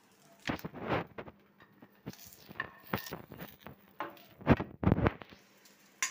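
Several short scuffs and knocks of handling in a kitchen, loudest about four and a half seconds in.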